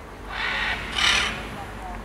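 Scarlet macaw giving two short, harsh squawks in quick succession, the second one louder.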